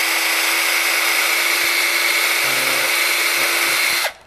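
Power drill running steadily as its bit bores an angled pilot hole through a 2-inch PVC pipe coupling, then stopping abruptly at the very end.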